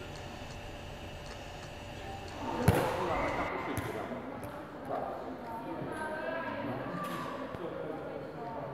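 A steady low hum, then a single sharp bang about two and a half seconds in, followed by people talking in a large sports hall.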